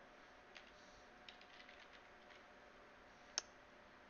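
Faint computer keyboard typing: a few soft, scattered key clicks over quiet room tone, then one sharper click about three and a half seconds in.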